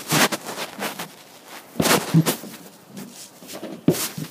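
Irregular bumps and rustling from a hand-held camera being jostled and rubbed while its holder moves in a swinging hammock. The loudest burst comes about two seconds in.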